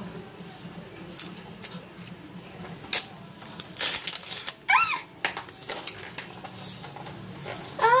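Close-up clicks, knocks and rustling of a cardboard box and plastic packaging being handled, busiest in the middle, with a brief high squeal about five seconds in.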